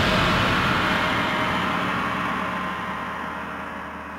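A dramatic whooshing noise swell from a TV serial's soundtrack, over a low steady drone, loudest at the start and fading away gradually.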